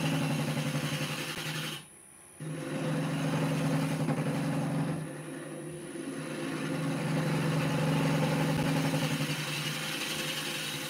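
Wood lathe running with a steady motor hum while a gouge cuts across the face of a spinning wooden blank, a rough scraping rush of the cut laid over the hum. The sound cuts out abruptly for about half a second around two seconds in.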